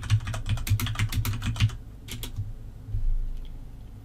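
Typing on a computer keyboard: a quick run of keystrokes for about two seconds, a few more after a short pause, then a low thump about three seconds in before it goes quiet.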